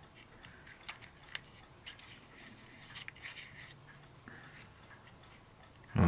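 Faint, scattered light clicks and taps of small plastic model kit parts being handled as a gun barrel is pushed onto its trunnion mount for a dry fit.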